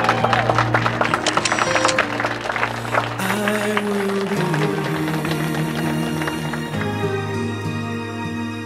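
Guests applauding over music for the first three seconds or so. After that, soft background music with sustained notes plays on alone.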